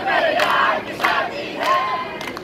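Several voices shouting loudly together in short, high-pitched phrases, a chanted line.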